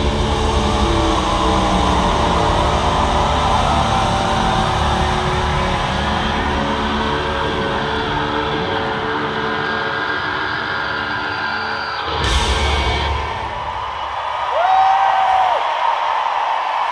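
Rock band playing a loud, heavy live outro with electric guitar and drums, closing on a final hit about twelve seconds in. The music then falls away and the crowd cheers, with a whoop near the end.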